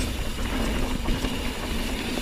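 Ibis Ripley mountain bike on Schwalbe Nobby Nic tyres rolling fast over dirt singletrack: a steady rumble of tyres and frame, with wind buffeting the camera microphone.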